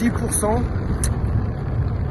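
Steady low rumble of wind buffeting the microphone while riding an electric unicycle at road speed, with a brief vocal sound from the rider about half a second in.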